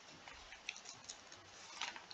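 A quiet room with a few faint, irregularly spaced clicks and a soft breath-like rush near the end.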